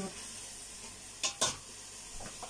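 Carrots frying in a pan with a steady sizzle, and two sharp knocks of a utensil against the pan about a second and a half in.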